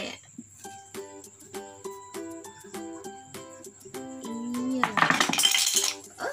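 Light music of short plinking notes, then about five seconds in a loud clatter lasting about a second as the wooden pieces of an animal peg puzzle fall off the board when it is lifted upright.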